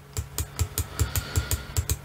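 Computer keyboard keys pressed in quick, uneven succession, about six taps a second, over a faint steady hum.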